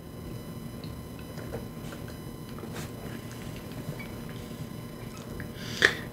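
Faint mouth sounds of someone tasting a sip of seltzer: a few small clicks over a low, steady room noise.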